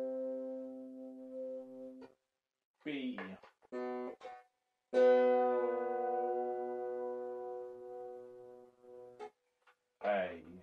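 Wire strings of an early Irish harp (clàirseach) plucked and ringing with long sustain while being tuned in octaves, a bass C against the C above. A held note is stopped short about two seconds in, followed by brief pitch-bending sounds as a string is adjusted. A strong fresh pluck at about five seconds rings out and slowly fades.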